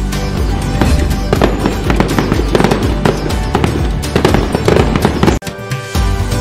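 Fireworks bursting and crackling over festive background music. The sound cuts out abruptly for about half a second near the end.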